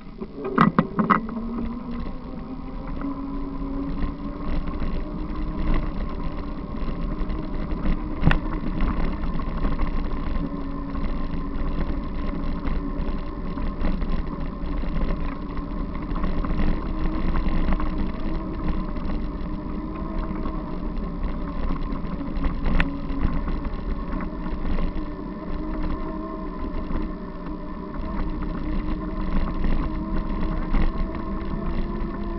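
Bicycle rolling along a dirt forest track: a steady rumble of tyres and frame with a continuous droning hum, picking up as the ride gets going. A few sharp knocks from bumps in the track, about a second in, around eight seconds and again near twenty-three seconds.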